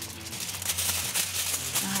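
Sheet of aluminium foil being handled and crinkled, a dense crackle with many small crackles.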